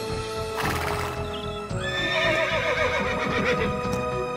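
A horse whinnying: one long wavering call starting a little under two seconds in, over background music. A brief rush of noise comes about half a second in.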